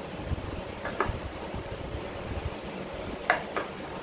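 Plastic sport-stacking cups set down one at a time on the table: about four short light clacks, the loudest a little over three seconds in, over a steady low hum.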